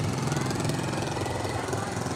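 Motorbike engine running at low speed close by, a steady low rumble.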